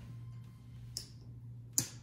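Casino chips clicking as they are picked up and set down on a craps table layout: a lighter click about a second in and a sharper, louder one near the end, over a steady low hum.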